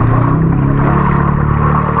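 A motor engine running steadily, a low drone that holds through the whole stretch.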